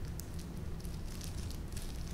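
Faint, scattered soft crackles and rustles of hands in disposable plastic gloves pressing succulent cuttings into potting soil, over a low steady hum.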